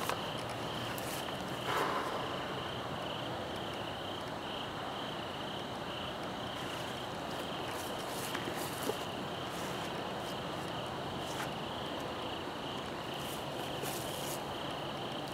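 Crickets chirping steadily in a pulsing trill at night, with a few brief rustles now and then.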